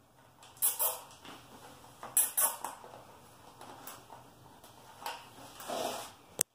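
Hands working a bungee cord inside black plastic milk crates: short bursts of rubbing and rattling, a couple about a second in, a couple around two seconds in, and a longer stretch near the end.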